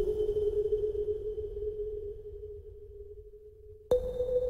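Background music: a single held electronic tone that slowly fades, then a slightly higher tone starts with a click near the end.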